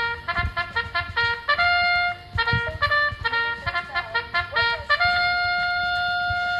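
A short brass-like jingle: a run of quick, bouncing notes, ending on one long held note from about five seconds in. It is the house's new signal tune marking the opening and closing of the conspiracy corner.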